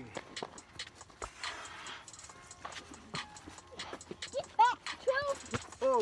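A puppy giving a series of short, high-pitched whining cries, each rising then falling, starting about four seconds in, over scattered clicks and knocks.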